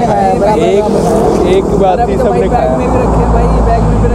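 People talking over the low rumble of road traffic; the rumble swells about three seconds in as a car goes by on the road.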